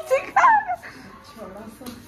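Young children's short, high-pitched yelps and squeals in the first second, dropping to quieter voices for the rest.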